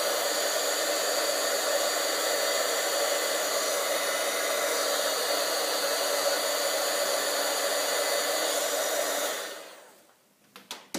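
Craft heat tool running steadily, blowing hot air to dry a freshly watercoloured paper piece. It is switched off near the end and fades out.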